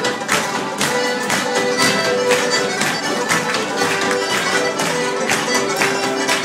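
Live Irish traditional music played on fiddle, banjo and button accordion, with the sharp taps of a sean-nós dancer's shoes on a wooden door beating in time a few times a second.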